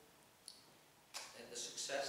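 A single short click, typical of a laptop key being pressed, in a quiet spell, followed just after a second in by a young man's voice as speech resumes.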